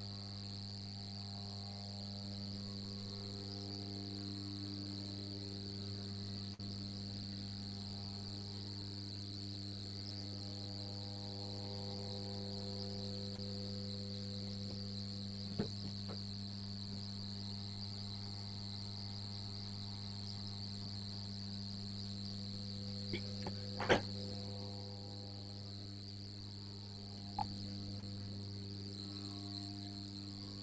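Steady low electrical hum with a high-pitched whine over it, picked up by an open microphone on a video call, with a few faint clicks, the loudest about two-thirds of the way through.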